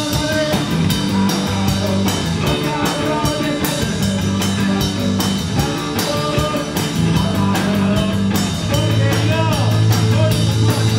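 Live rock band playing loudly: a steady drum-kit beat, electric guitars and a singer's voice over sustained low notes.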